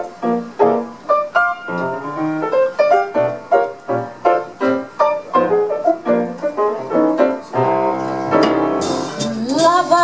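Live jazz on a grand piano: a steady run of struck chords and single notes. Near the end, cymbals and a held sung note join in.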